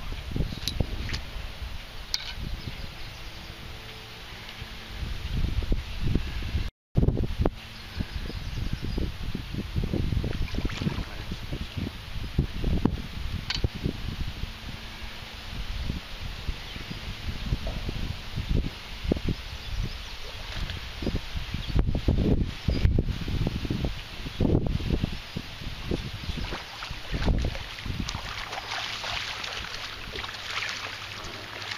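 Wind buffeting the microphone in uneven gusts. Near the end a hooked fish splashes in the shallows as it is brought to the landing net.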